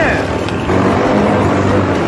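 ATV (quad bike) engine running steadily, heard close up from the handlebars.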